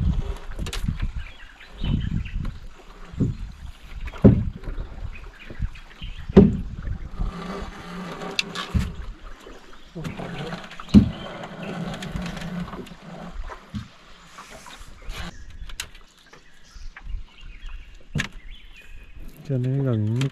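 Irregular sharp knocks and thumps on a small boat as a trotline is hauled in hand over hand, and its stone sinkers and the wet rope are dropped onto the deck.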